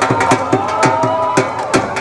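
Live Punjabi folk music played loud through a hall's PA: a dhol beats a steady, fast rhythm under a held melodic note that glides slightly, with the crowd cheering.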